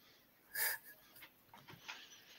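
A single short breathy exhale, a brief puff of air, about half a second in; otherwise quiet.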